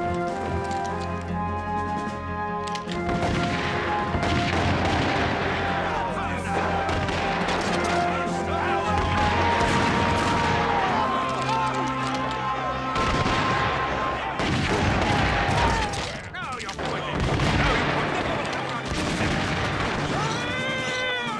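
Musket fire in a battle soundtrack: volleys and scattered shots from flintlock muskets, dense from about three seconds in, over orchestral music and voices.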